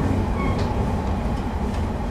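Inside a JR 115-series electric train's motor car as it runs into its terminal station: a steady low rumble from the wheels and running gear, with a short faint high squeak about half a second in.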